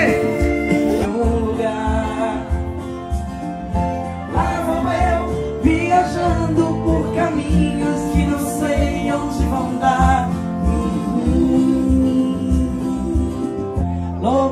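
Live country-style band music played loud through a PA system, with a steady beat and sustained pitched notes, in a mostly instrumental stretch of the song.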